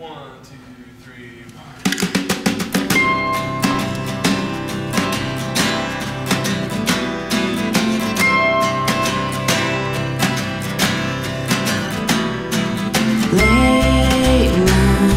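A small acoustic band starts a song about two seconds in: strummed acoustic guitar and mandolin with a snare drum keeping time. A bass guitar comes in with low pulsing notes near the end.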